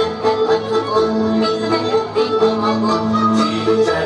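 Hungarian folk dance music for Transdanubian dances, with held melody notes over a steady dance beat.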